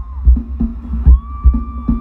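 Live band music amplified through a stadium sound system and heard from the crowd: a heavy bass beat, with a held high note about a second in.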